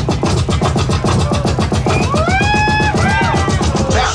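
Hip hop DJ set played live from vinyl on turntables: a fast, dense drum beat, with a pitched tone that slides up about halfway through, holds for about a second and then dips.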